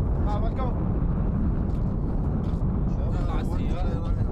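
Several people talking in brief snatches over a steady low rumble.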